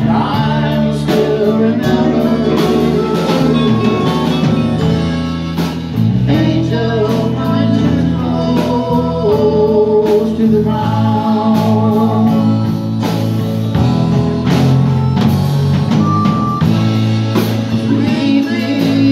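A country band playing live: acoustic and electric guitars, bass, drums and Hammond organ, with a harmonica carrying a wavering melody over the band.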